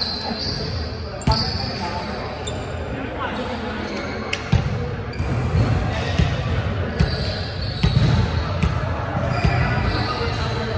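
A ball bouncing on a hardwood gym floor, a handful of sharp thuds at uneven intervals that echo in the large hall.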